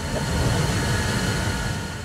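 A loud rushing roar as smoke and steam burst from the door of a burning fire-training container. It swells within the first half second, then slowly eases off.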